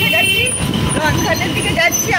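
Voices talking over the rumble and road noise of a moving open-sided rickshaw.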